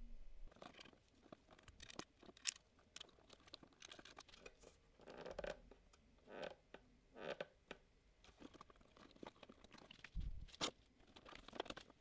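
Faint scattered clicks and short rustles of wiring work: ferruled motor leads being handled and pushed into the plug-in terminal block of an AC servo drive.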